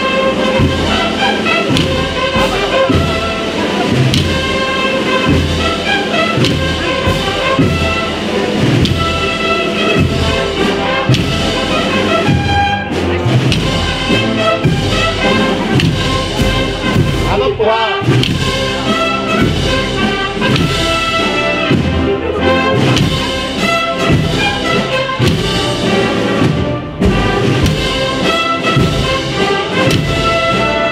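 Spanish wind band (banda de música) playing a processional march: brass carrying the melody over a steady bass-drum beat.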